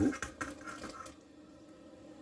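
A kitchen utensil scraping and clicking against a saucepan of boiling water in short strokes, as the broccoli is put in to blanch, settling within about a second to a faint steady hum.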